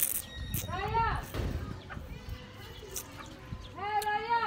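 A woman's short wordless vocal sound about a second in, with a few small clicks around it.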